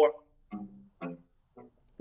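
Cello played very softly: three short, quiet notes about half a second apart, each dying away quickly, in a pianissimo passage.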